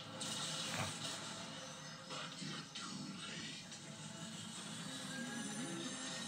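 Television soundtrack heard through the set's speaker: music over mechanical sound effects from a large machine.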